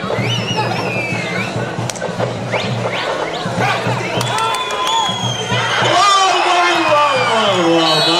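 Kabaddi crowd noise in an indoor hall: many voices shouting, with a few high whistles, during a raid. About six seconds in it grows louder into a mass of overlapping shouts as the raider is tackled.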